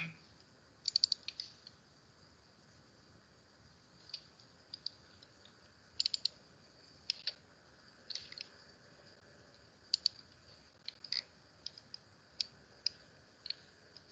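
Computer mouse and keyboard clicks: scattered sharp clicks, some in quick runs of two or three, with pauses of a second or more between them, as documents are opened and arranged on screen.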